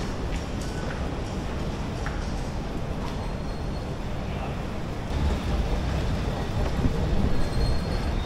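Steady rumble and hiss of an elevated BTS Skytrain station concourse, rail traffic included, growing a little louder about five seconds in, with a faint high whine in the second half.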